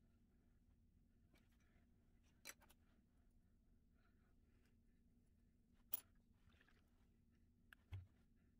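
Near silence: room tone with a low steady hum and a few faint short clicks, the sharpest about six seconds in.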